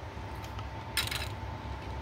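Light clicks and a brief rustle of plastic model-kit sprue trees being laid one on top of the other, over a faint steady hum.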